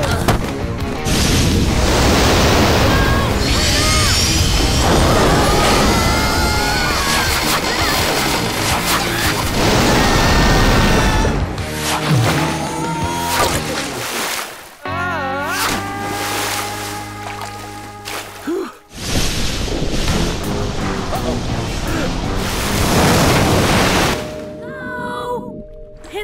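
Cartoon soundtrack: background music over loud rushing, crashing water effects, with brief vocal exclamations.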